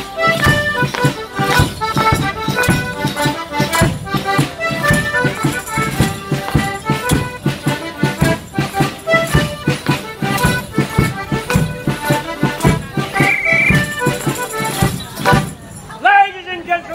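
Live traditional morris dance tune played for a garland dance, with a steady beat, that stops suddenly near the end.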